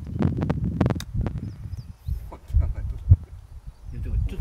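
A golf club strikes a ball in a short chip shot, with a crisp click about a second in, over low rumbling noise on the microphone.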